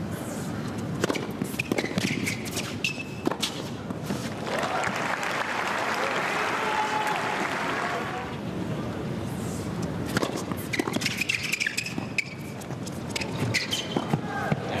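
Tennis play on an indoor hard court: sharp ball bounces and racket strikes with short shoe squeaks, densest near the end. A swell of crowd noise comes in the middle.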